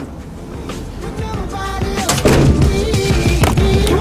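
Background music fading in: a song builds up over the first two seconds and then plays at full level, with a short click right at the start.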